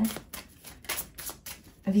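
A rapid, slightly uneven run of light clicks or taps, about seven a second.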